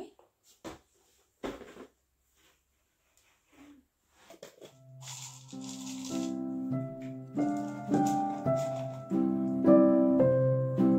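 A few sparse clicks and rustles of handling a plastic pet carrier, then soft background piano music that comes in about halfway and grows louder.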